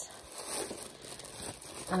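A clear plastic bag crinkling and rustling unevenly as it is handled and lifted out of a drawer.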